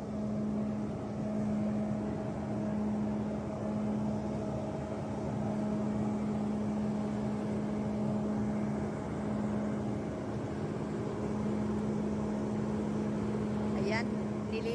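Grape harvester machine working a vineyard row, its engine giving a steady drone.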